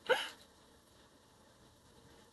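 A single short vocal sound from a person right at the start, rising quickly in pitch, followed by faint steady room hiss.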